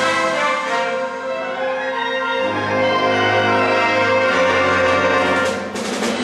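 School wind band with woodwinds and brass playing live in a hall: sustained chords, with a low bass note coming in about halfway through and a brief dip just before the end.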